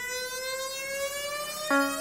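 Synthesized rising tone of a film logo sting, a pitched note with overtones gliding slowly upward like a siren winding up. About 1.7 s in, a pulsing electronic beat comes in under it.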